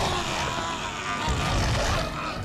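Film soundtrack: dramatic score mixed with dense action sound effects and a heavy low rumble.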